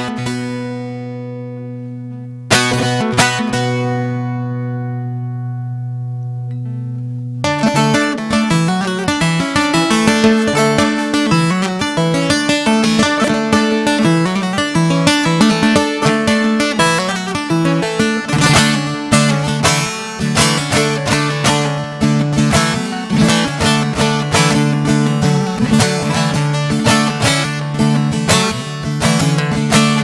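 Bağlama (long-necked Turkish saz) played solo. A chord is struck and left ringing, and a second follows about two and a half seconds in. From about seven seconds in, a fast-picked melody runs over steady low drone notes.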